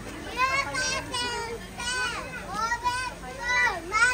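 Young children's high-pitched voices calling out and squealing in a string of short excited cries, the loudest near the end.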